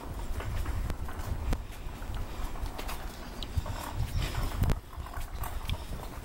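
Wheels of a loaded hand cart rolling over a concrete drive, a steady low rumble broken by irregular clicks and knocks.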